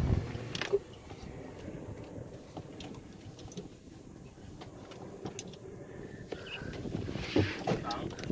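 A golf cart riding over the course, heard as a steady low rumble with faint ticks and rattles.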